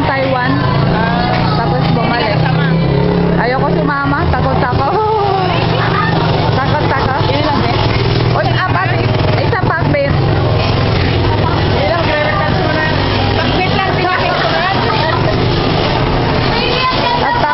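Voices talking in a busy covered market, over a steady low rumble.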